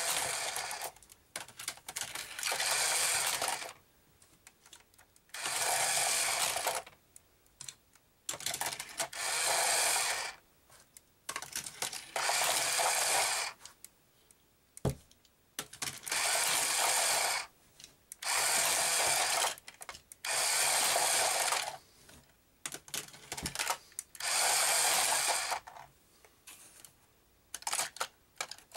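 Hot Wheels Power Tower's motorized spiral lift running in short bursts of about a second and a half, roughly every three to four seconds, as toy cars are loaded into it one at a time. Small plastic clicks come in between, with one sharp click about halfway through.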